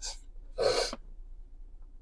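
A man's short, audible breath in, about half a second in, during a pause in his talk, then only a faint low hum.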